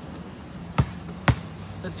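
A basketball bouncing twice on an asphalt driveway, about half a second apart.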